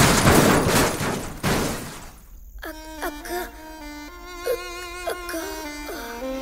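A loud, noisy crash sound effect of a vehicle collision fading away over the first two seconds. Then soft string music with sliding notes.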